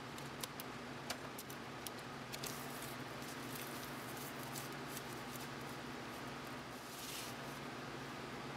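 Light plastic clicks and taps as small quick-release bar clamps are released and pulled off a folded leather sheath, several in the first two seconds or so. Near the end comes soft rustling as the stiff leather and the cellophane-wrapped knife inside it are handled.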